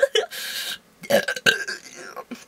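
A woman's wordless vocal sounds: a breathy hiss lasting about half a second, then short, low, rough vocal noises about a second in.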